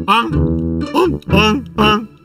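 Background music: a short plucked guitar phrase of a few separate notes.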